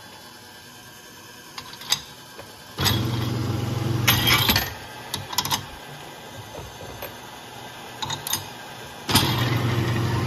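Garage door opener motor starting and running for about two seconds, twice about six seconds apart, as it indexes the annealer's wheel of brass cases round one position each time. Sharp metallic clinks come around each run.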